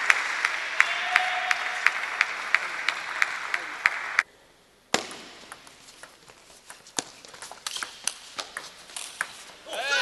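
Crowd noise in an indoor hall with sharp clicks at a steady pace, cut off suddenly about four seconds in. Then a table tennis rally: ping-pong ball clicks off the table and bats, coming faster, and the crowd breaks into cheering near the end as the point is won.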